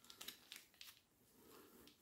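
Near silence with a few faint crinkles and light clicks of a plastic blister pack being handled.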